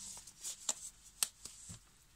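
Handling noise as a thin disposable glove is pulled on: soft rustling at first, then a few light, sharp clicks.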